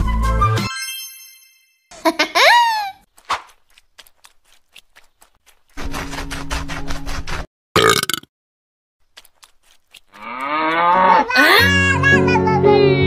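A string of cartoon meme sound effects separated by short silences. Music fades out, then come a brief ringing chime, a quick gliding sound, scattered clicks, a buzzing tone for about a second and a half, and a short burst. Near the end a wavering, wailing cry builds as music returns: the banana cat meme's crying sound.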